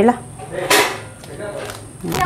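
A fork scraping drained instant noodles out of a plastic colander into a bowl, with one short scraping rasp a little under a second in.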